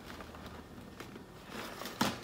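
Faint rustling and a few light taps of hands handling things on a desk, getting louder near the end.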